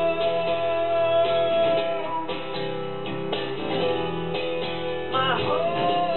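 Acoustic guitar strummed live, with wordless singing: a long held note that fades about two seconds in and a voice sliding up in pitch near the end.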